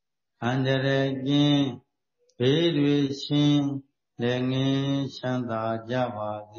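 A man's voice chanting Buddhist Pali text on held, level notes, in three phrases of about a second and a half each, separated by short pauses.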